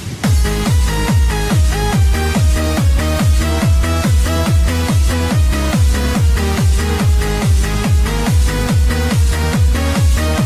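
Hands-up techno dance track: a fast, steady four-on-the-floor kick drum, about three beats a second, with bass and a synth lead melody. The beat comes back in right at the start after a brief drop.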